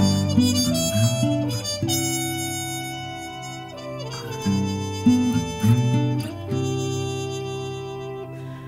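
Instrumental break in an acoustic song: a harmonica plays long held notes that move from pitch to pitch over strummed acoustic guitar, with no singing.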